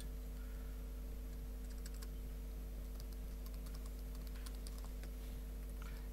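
Faint keystrokes on a computer keyboard, scattered clicks as code is typed, over a steady electrical hum.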